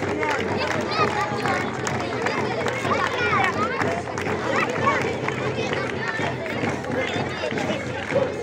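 A crowd of children and adults with many voices talking and calling out at once, high children's voices standing out above the babble.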